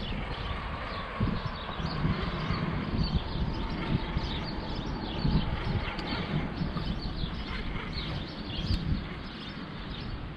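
Outdoor riverside ambience: a steady rushing haze with irregular low bumps, and birds chirping faintly.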